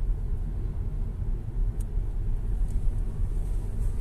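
Steady low road and tyre rumble heard inside the cabin of an MG5 electric estate car rolling at about 40 km/h, with no engine note. A faint tick about two seconds in.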